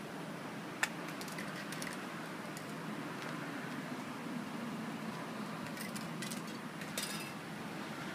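Spray-paint cans and painting tools being handled: scattered light clicks and small metallic rattles, a few at a time, over steady outdoor background noise.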